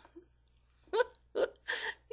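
A person laughing in three short, quick bursts, starting about a second in after a pause.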